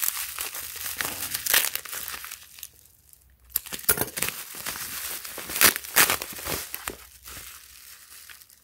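Plastic bubble wrap crinkling and crackling as it is handled and pulled open by hand, with a short lull about three seconds in before the crinkling picks up again.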